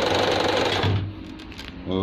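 Lervia portable sewing machine running fast, its needle mechanism ticking in rapid strokes, then stopping abruptly a little under a second in. The motor is turning freely, now that the grime that kept it from running properly and made it spark has been cleaned out.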